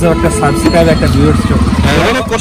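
A small auto-rickshaw engine running with a fast low pulse as it passes close by, loudest from about a second in, under people talking.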